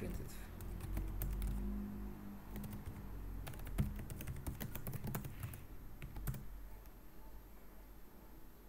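Computer keyboard being typed on in quick bursts of keystrokes, thinning out in the last couple of seconds.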